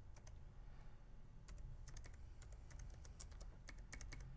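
Computer keyboard typing, faint: a few scattered key clicks, then a quicker run of keystrokes from about a second and a half in, over a low steady hum.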